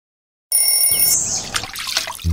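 Twin-bell alarm clock ringing briefly and then cut off, followed by a hissing wash of noise.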